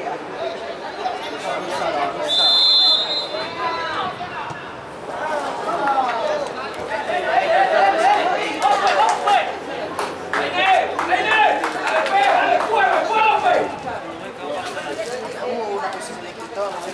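Overlapping voices of players and spectators calling out around a football pitch, with one short referee's whistle blast a little over two seconds in, signalling the free kick to be taken.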